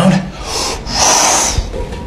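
A man's forceful hissing breath out through the teeth as he strains to squeeze a frying pan, with a strong hiss about a second in lasting about half a second.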